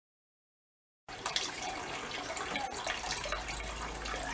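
Digital silence for about the first second, then water trickling and splashing steadily in the still's cooling-water bucket as the pump circulates it through the condenser hoses.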